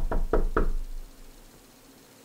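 Loud, rapid knocking on a door: a quick run of hard knocks, about five a second, that stops about half a second in.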